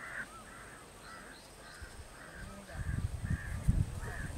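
Crows cawing off-screen, a run of short caws about two a second. In the second half, louder low rumbling thumps come in under them.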